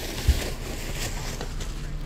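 Grocery bags being set down on a stone doorstep: one dull thump shortly after the start, then low steady handling and background noise.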